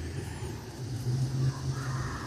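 Faint, low background rumble during a pause in speech.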